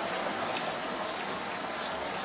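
Pot of yak-meat pilaf cooking with a steady hiss of steam and sizzling.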